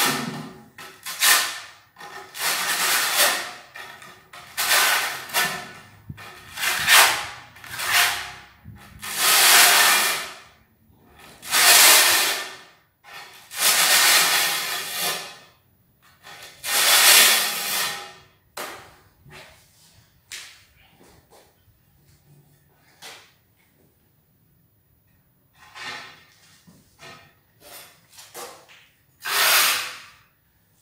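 Steel trowel scraping fresh mortar across the back of a porcelain tile in repeated strokes of a second or two each, smoothing on a thin skim coat (back-buttering) with the trowel's flat edge. After about 18 seconds the strokes give way to fainter, shorter scrapes and light knocks.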